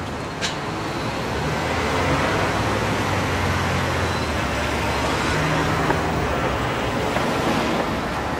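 Road traffic going past, a steady rumble and tyre noise that swells through the middle and eases off near the end, with one short tick about half a second in.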